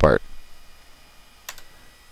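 A single computer mouse click about one and a half seconds in, selecting a menu item, after the tail end of a spoken word.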